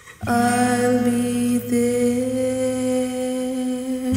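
A long held sung note over a sustained chord from the karaoke backing track. The note starts just after a brief drop at the very start, has a slight wobble, and breaks for an instant about one and a half seconds in.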